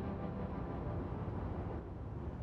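Car driving along a road: a steady low engine and tyre rumble, with faint background music fading out in the first half-second.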